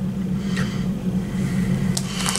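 A steady low hum, with a brief faint crinkle of a snack-chip bag about half a second in as a hand reaches into it, and a small click near the end.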